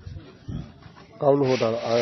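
About a second of low room sound, then a man's voice briefly, overlapped near the end by a rubbing, rustling noise.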